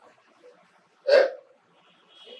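A single short, loud vocal sound from a man close to a handheld microphone, about a second in.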